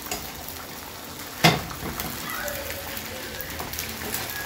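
Beaten eggs sizzling in a hot frying pan, a steady hiss, with one sharp knock about a second and a half in.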